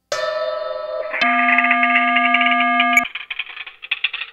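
Synthesizer music: a sustained chord that changes about a second in to a fuller, fast-trilling chord, which cuts off sharply about three seconds in.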